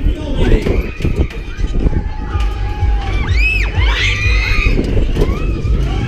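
Wind buffeting a camera microphone on a swinging pendulum fairground ride, with riders' high cries that rise and fall in pitch about halfway through.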